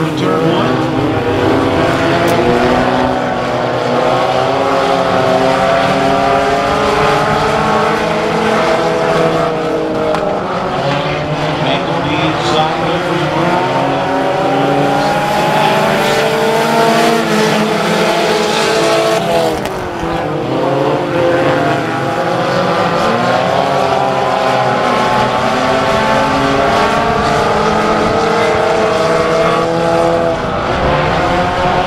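A pack of USRA Tuner compact race cars with four-cylinder engines running on a dirt oval. Several engine notes overlap, rising and falling in pitch as the cars accelerate and lift, with a brief drop about two-thirds of the way in.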